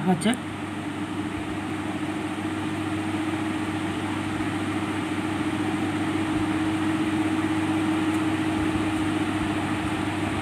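A steady electrical hum with an even low tone under a faint hiss, unbroken throughout.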